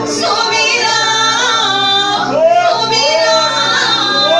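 Worship singing in a church service, led by a woman's voice with gliding, held notes over a steady musical accompaniment.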